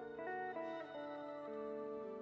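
Clean electric guitar playing a quiet, slow jazz passage of sustained chords and single notes, with a few new notes in the first second and a chord change about a second and a half in.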